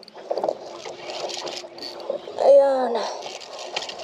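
Rustling handling noise with water sounds and a faint steady hum, broken by one excited shout falling in pitch about two and a half seconds in, while a fish is being fought on rod and line.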